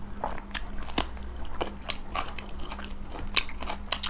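Crunchy chewing of raw carrot: a run of sharp, crisp crunches, about three a second.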